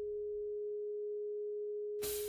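A steady, pure electronic sine tone at a single mid pitch, held without change or decay. It is the listening 'frequency' tone of a sleep-frequency track.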